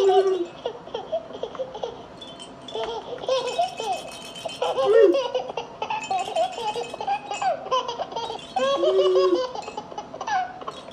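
A woman laughing in bursts while a plush baby rattle toy is shaken, its chime jingling a few times in between.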